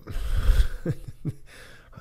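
A man's breathy laugh: a puff of breath onto the microphone, then a few short chuckles.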